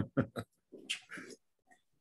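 A man laughing: three quick snorting bursts, then a softer breathy chuckle that dies away by about halfway through.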